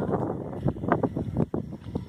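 Wind buffeting a phone microphone outdoors, an uneven, gusty rumble.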